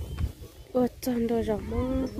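A person's voice talking in drawn-out, sing-song tones, starting a little before halfway and running to the end, with a few faint scuffs before it.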